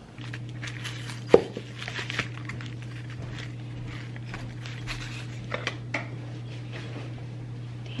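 A stack of coasters handled on bubble wrap: scattered light clicks and rustles, with one sharp click about a second in, over a steady low hum.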